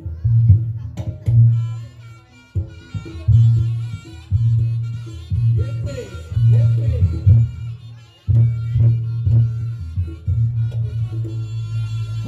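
Live Reog Ponorogo gamelan accompaniment: heavy drum and gong strokes in a driving rhythm under a sustained, shrill reed-trumpet (slompret) melody, with brief breaks in the beat near 2 and 8 seconds.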